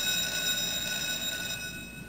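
Electric school bell ringing steadily to signal the end of class.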